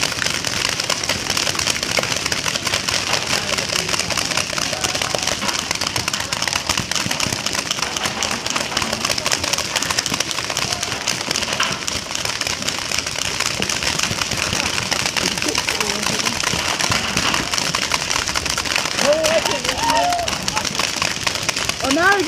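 Many paintball markers firing at once, a dense, unbroken crackle of shots. Voices shout over it near the end.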